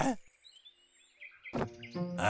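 Faint forest ambience with a few small high bird chirps, right after a laugh ends. About one and a half seconds in, steady held tones come in, as music starts.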